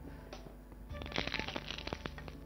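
Oil on a hot tava starts sizzling and crackling about a second in, as a banana-leaf-wrapped fish parcel is laid into it.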